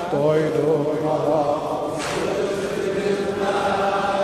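Male voice singing an Azerbaijani Shia lament (mersiye) in a slow, lullaby-like chant, drawing out long, wavering notes between the sung lines.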